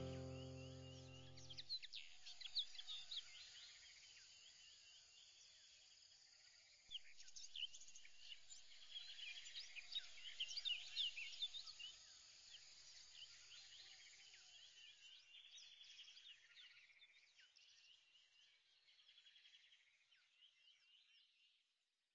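Faint chorus of many birds chirping, short quick calls overlapping throughout, thinning and fading out near the end.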